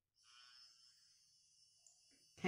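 Near silence, with a faint steady high-pitched whine.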